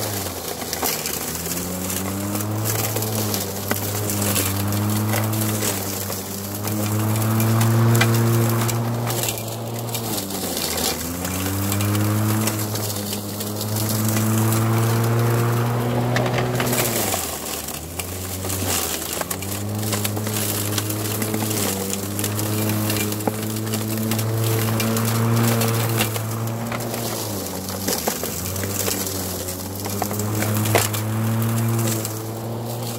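Greenworks corded electric lawn mower cutting through woody brush: a steady motor-and-blade hum whose pitch sags about four times as the blade bogs down in thicker stems, then climbs back. Sharp ticks of sticks striking the blade and deck run throughout.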